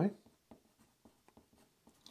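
Pencil writing on paper: a series of faint, short scratchy strokes.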